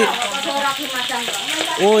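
Chicken frying in a pan on a wood-fired clay stove, a steady sizzle, under voices in the background.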